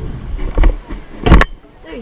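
Kick scooter wheels rolling fast over concrete, with wind rumbling on the rider-mounted microphone and two loud thumps about three quarters of a second apart.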